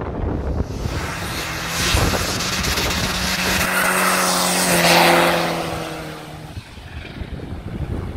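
Commer van with a Saab B234 four-cylinder engine driving past. The engine note and tyre noise build, are loudest about five seconds in, then fade away as it goes by.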